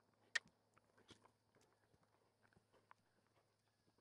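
Faint, irregular hoofbeats of a saddled horse moving around a soft dirt round pen, with one sharper knock about a third of a second in.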